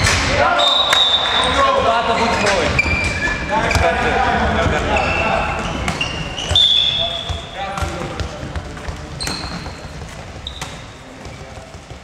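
Handball play on a sports-hall floor: the ball bouncing, sneakers giving short high squeaks, and players shouting, all echoing in the hall. It gets quieter over the last few seconds.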